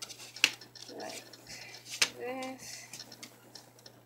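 Handling noise of a paper strip being worked with a plastic bone folder on a wooden tabletop: two sharp clicks, about half a second and two seconds in, and light paper rustling. A short bit of voice comes just after the second click, over a steady low hum.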